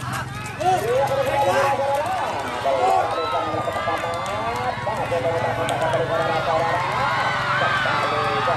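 Crowd of spectators shouting and calling out, many voices overlapping, getting louder about half a second in, over a steady low hum.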